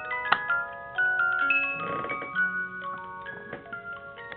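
Thorens cylinder music box playing an opera air: the pinned brass cylinder plucks the steel comb, each note ringing on over the next. A brief handling rustle comes about two seconds in, and the notes are slightly softer toward the end.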